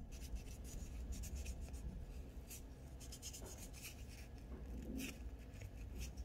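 Faint, irregular swiping strokes of a gel-cleanser-soaked nail wipe rubbed across gel-coated fingernails, cleaning off the sticky uncured layer left after curing the base gel.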